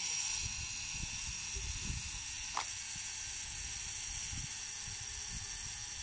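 Mechanical clockwork self-timer of a Minolta SR101 film SLR running down after release: a steady buzzing whir that holds at an even level.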